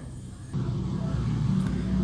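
A low rumble that builds about half a second in and then holds steady, with no speech over it.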